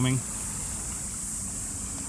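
Steady rush of a flooded creek running fast and high, with a continuous high insect buzz over it.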